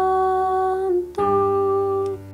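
Hymn music with keyboard: a long held chord, a brief break just under a second in, then a second long held chord.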